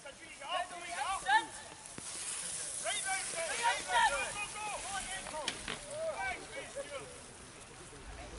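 Spectators shouting encouragement at cycle speedway riders, several short calls, with a hiss of noise about two to five seconds in.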